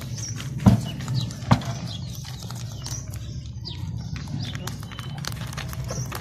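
Several rabbits crunching cucumber and carrot pieces close to the microphone: a stream of small, irregular crunching clicks, with two louder knocks in the first two seconds.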